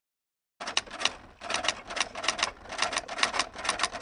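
Typing sound effect: quick keystroke clicks in short bursts, starting just over half a second in, in time with text being typed out letter by letter.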